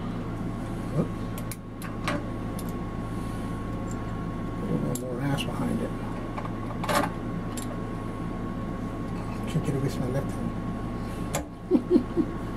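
Scattered metal clicks and knocks as locking pliers are fitted onto the pump shaft of a Craftsman air compressor, over a steady low hum.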